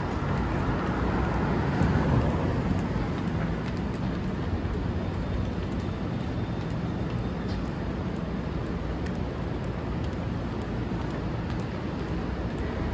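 City street traffic noise: a steady low rumble of vehicles, a little louder about two seconds in.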